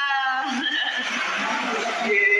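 A person's voice makes a short, high sound with a shaky, wavering pitch in about the first half second, followed by indistinct noisy background sound.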